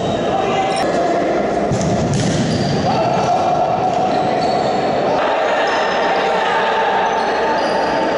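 Echoing sports-hall sound of a futsal game in play: players' voices calling out and the ball being kicked and bouncing on the court, over a steady din. The sound changes abruptly a couple of times where the footage is cut.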